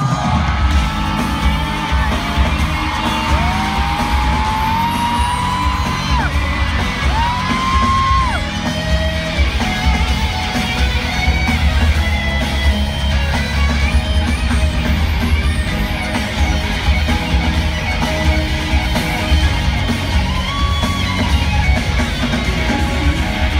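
Loud live concert music over an arena PA with a heavy bass beat, and fans screaming and whooping over it.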